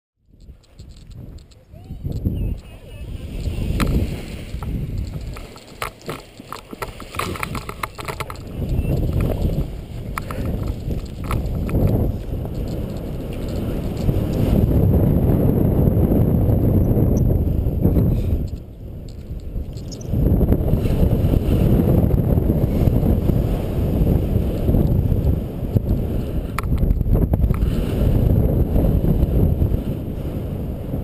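Wind buffeting the camera microphone of a paraglider in flight, gusting and rising and falling, loudest and steadiest through the second half. Scattered knocks and rustles come in the first several seconds.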